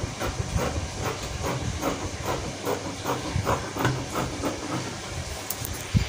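Scissors cutting through folded cotton Ankara wax-print fabric: a rapid run of crisp snips, about three a second, with the rasp of blades on cloth. One sharper click comes near the end.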